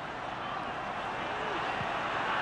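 Steady crowd noise from a packed football stadium, many voices blending into an even din with no single voice standing out.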